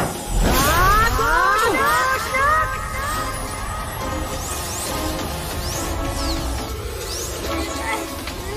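Cartoon action background music, with a run of quick swooping glides in pitch during the first few seconds.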